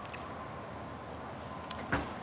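Disposable wooden chopsticks split apart with a single short, sharp crack near the end, over low steady outdoor background noise.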